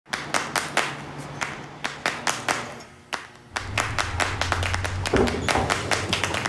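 A series of irregular sharp taps and knocks, joined about three and a half seconds in by a low steady hum.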